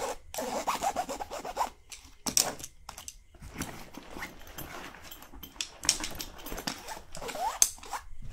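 Close-miked scratching and rubbing on a fabric backpack: a run of short, irregular rasping strokes with brief pauses between them.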